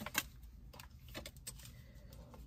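Tarot cards being handled and laid down: soft scattered clicks and taps, the loudest just after the start.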